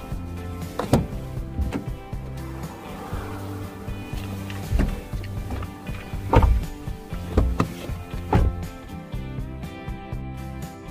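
Background music over a series of knocks and thuds from a Suzuki Wagon R's driver's door: the handle is pulled, the door opens, someone gets in, and the loudest thud comes about six seconds in, as the door shuts.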